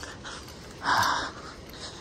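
Low, steady wash of small waves on a sandy beach, with one short, louder rush of noise about halfway through.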